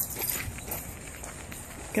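Footsteps on a sandy path, a few uneven light steps over low outdoor background noise.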